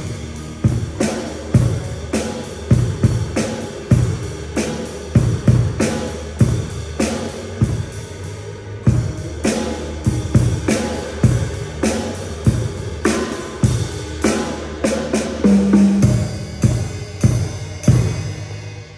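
Drum kit played in a steady beat: bass drum and snare strikes with cymbals ringing over them, stopping right at the end.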